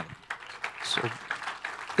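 A congregation applauding softly, with a few scattered voices in among it, at the end of a healing testimony.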